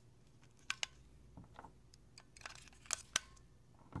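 AA batteries pressed into the plastic six-cell battery holder of a LEGO Mindstorms EV3 brick, giving sharp clicks against the metal contacts. There are two quick clicks about a second in, a short rustle of handling, two more clicks near three seconds and a last click at the very end.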